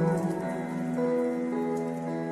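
Slow, soft music with long held notes that shift every half second or so, over a faint steady hiss like rain.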